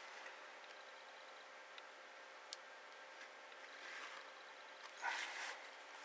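Quiet room tone with faint scratching of a ballpoint pen drawing along a plastic set square on paper, loudest briefly about five seconds in, and one small tick in the middle.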